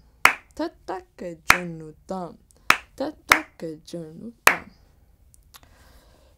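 Konnakol, the spoken drum syllables of Carnatic rhythm, recited in a quick even pulse, with sharp hand claps marking the beats of the five-beat khanda chapu tala cycle. It stops about three-quarters of the way through, leaving faint room tone.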